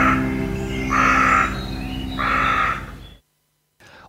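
Section jingle of held guitar-led music fading out, with three short raspy calls about a second apart laid over it; it stops about three seconds in.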